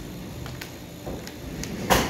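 A few faint clicks and knocks of things being handled at a pulpit, with one sharp, louder knock just before the end.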